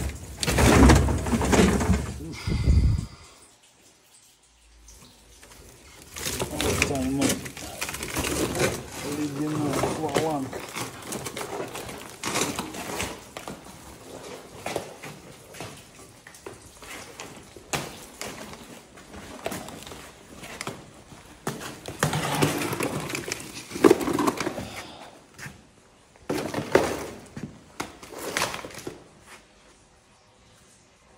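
Indistinct talking in a small room, in several stretches, with short knocks and clatter between them and a brief quiet gap a few seconds in.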